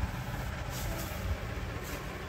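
Steady low background rumble with a faint hiss, broken by a few brief soft rustles, about a second in and again near the end.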